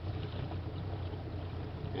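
A boat's motor running steadily at low speed, a low even hum under water and wind noise as the boat cruises along.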